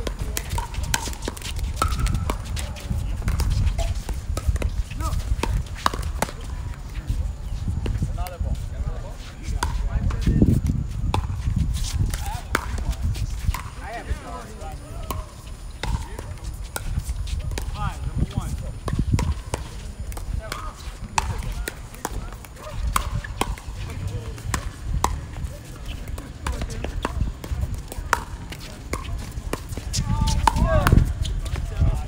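Pickleball rally: hard plastic paddles hitting a plastic pickleball, sharp pocks at irregular intervals, with voices murmuring in the background.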